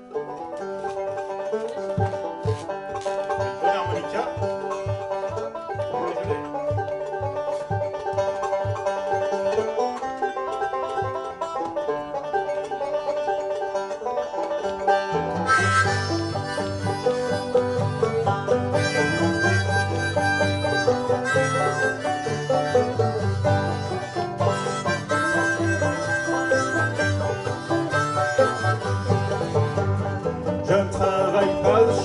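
Fast instrumental tune on two banjos and an acoustic guitar, the banjos picking a quick, steady rhythm. About halfway through the playing grows fuller and louder.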